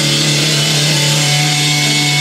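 Amplified electric guitar and bass holding one low note that rings on steadily, with amp hiss and no drums.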